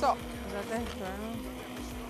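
Handheld immersion blender running in a pot of broth and cooked vegetables, a steady even hum.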